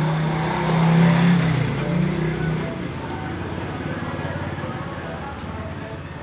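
A motor vehicle's engine passing close by: a low hum that swells about a second in and fades over the next two seconds, over background voices and music.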